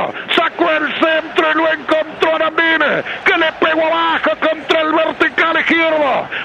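A man speaking quickly and without pause in excited Spanish radio football commentary.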